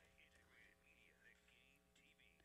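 Near silence: very faint, distant talking over a steady electrical hum.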